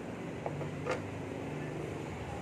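Low, steady hum of a motor vehicle engine, with one faint click about a second in.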